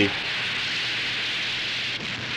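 Steady hiss of white vapour spraying and billowing, a film sound effect.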